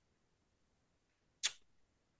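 Near silence broken once by a single short, sharp click about a second and a half in.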